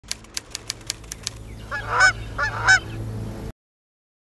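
Canada goose honking twice, each honk a doubled call, after a quick run of clicks. The sound cuts off suddenly near the end.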